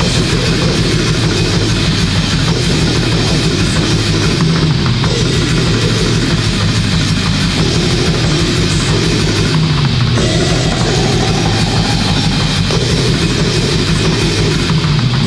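Bestial black metal: heavily distorted guitar and bass riffing over fast, dense drumming, at a steady loud level.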